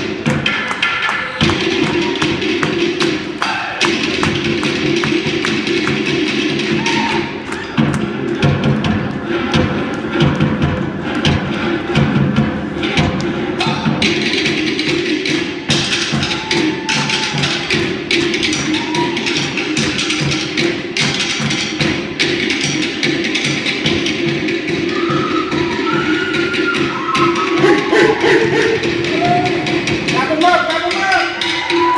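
Fast, driving drumming for a Samoan fire knife dance: rapid sharp taps over deeper thuds in a steady rhythm. Higher rising-and-falling calls come in over the drums in the last few seconds.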